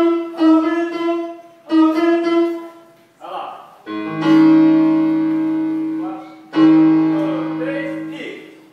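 Electronic keyboard with a piano sound: one note struck three times, each fading, then two fuller chords with bass notes, each held and dying away.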